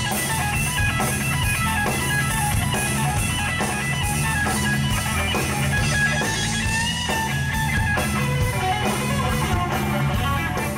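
A blues trio plays live: a Stratocaster-style electric guitar solos over bass guitar and drums. About seven seconds in, the guitar bends a note upward.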